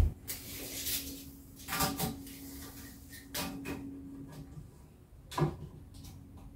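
Timber being handled on a wooden workbench: a sharp knock at the start, a brief scrape, then several more knocks, the loudest near the end. A faint steady hum runs for a couple of seconds in the middle.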